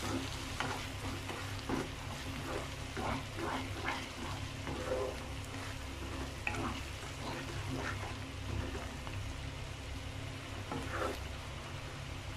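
A spatula stirring and scraping a thick onion-tomato masala in a frying pan as spice powders are mixed in, with scattered short scrapes over a steady low sizzle of frying.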